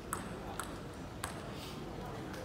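Table tennis ball striking: three sharp clicks about half a second apart, over a steady hall murmur.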